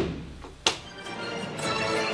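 A single sharp knock about two-thirds of a second in, then background music comes in about a second in and carries on steadily.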